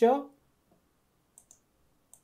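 Two quick, faint computer mouse clicks, a double-click, about one and a half seconds in.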